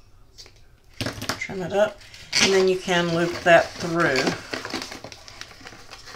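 A woman's voice sounding a few held, sung-sounding notes without clear words for about three seconds, starting a second in. Faint rustling of ribbon and cardstock being handled runs under it.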